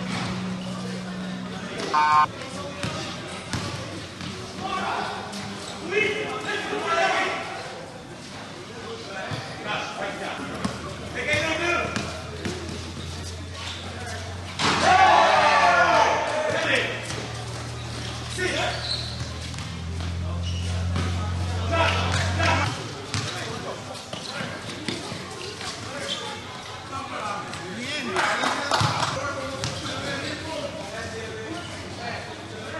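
Basketball game on a hard outdoor court: the ball bouncing as it is dribbled, with players shouting to one another and one loud shout about halfway through. A steady low hum runs underneath.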